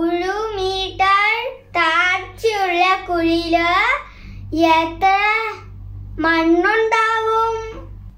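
A young boy singing without accompaniment, in short phrases with a few long held notes, the longest near the end.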